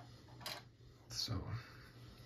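A single short, light click of a small metal hand tool handled on the lock-picking tray about half a second in, over a steady low electrical hum.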